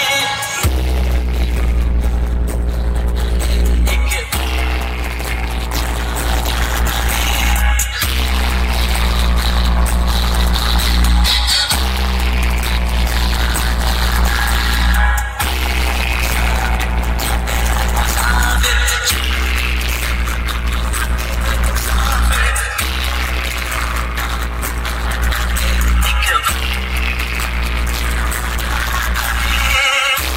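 A large DJ sound system of stacked bass cabinets playing loud electronic music dominated by a deep, sustained sub-bass. The bass cuts out briefly and comes back about every three and a half seconds, and each phrase carries tones that slide down in pitch.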